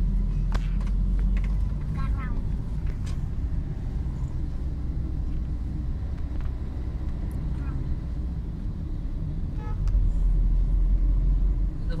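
Steady low rumble of a car's engine and tyres heard from inside the cabin while driving in city traffic, growing a little louder near the end, with faint voices at times.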